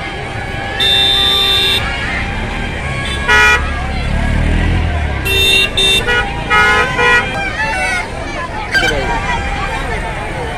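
Vehicle horns honking over a crowd's steady chatter: one long honk about a second in, a short one a few seconds later, then a run of short toots. A vehicle engine runs past in the middle.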